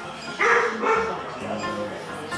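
A dog barks once, loudly and briefly, about half a second in, with a softer sound a second later, over background music.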